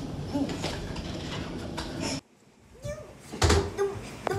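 Low room noise with faint voice sounds, cut by a moment of dead silence about two seconds in, then a few short thumps near the end.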